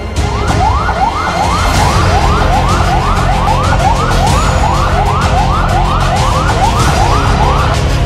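Ambulance siren sounding in quick rising sweeps, about two to three a second, over background music; the siren stops just before the end.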